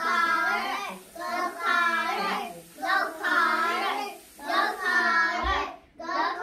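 A child singing a short phrase over and over, one phrase about every second and a half with brief gaps between.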